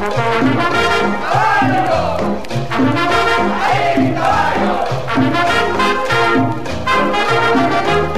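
Guaracha by a Venezuelan dance orchestra in an instrumental passage: a brass section plays over a bouncing bass line and percussion. Two swooping rise-and-fall phrases stand out, about a second and a half and four seconds in.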